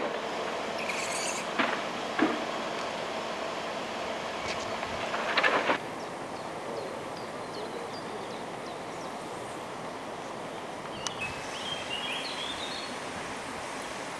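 Steady outdoor roadside background noise, with a few short knocks and a louder rush about five seconds in. A bird chirps briefly near the end.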